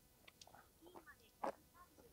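Near silence: faint, distant talking and one sharp click about one and a half seconds in.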